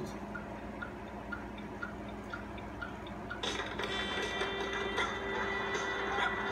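Music from a children's video promo playing through a TV speaker: at first only faint ticks about twice a second over a low hiss, then the music comes in fully about three and a half seconds in.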